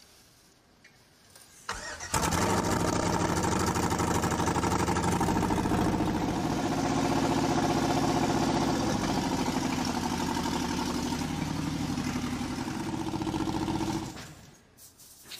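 The 1934 Buick's swapped-in V8 engine cranks briefly about two seconds in, catches at once, and then idles steadily.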